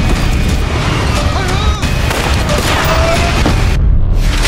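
Dramatic trailer score mixed with deep booms and a heavy, continuous rumble of crash-and-storm sound effects. Near the end the high end drops out suddenly, just before a hit.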